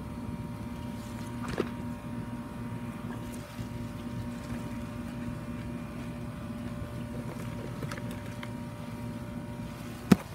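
A steady mechanical hum, like a motor running, over a low rumble, with a couple of faint clicks about a second and a half in and again near eight seconds.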